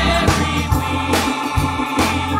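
Gospel praise team of several singers singing into microphones over live band accompaniment, with steady bass notes and a drum hit about once a second.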